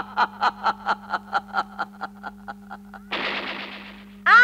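A fast roll of pitched drum strokes, about five a second, growing fainter over three seconds, then a sudden crash that dies away near the end, used as a dramatic musical accent.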